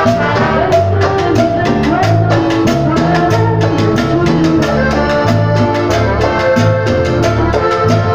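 A live tropical Latin dance band playing, with trumpets, electric bass and a drum kit with timbales keeping a steady, quick beat.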